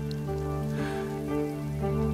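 Heavy rain falling and splashing on hard ground, under a slow film score of held low notes that moves to a new chord near the end.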